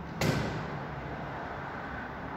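A single sharp knock about a fifth of a second in, fading quickly, over a steady low hum.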